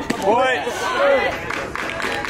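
Players' voices yelling and calling out from a baseball dugout, in loud drawn-out calls that rise and fall in pitch, with no clear words.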